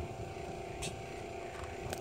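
Steady low mechanical hum with a faint rumble beneath it, and one faint click a little under a second in.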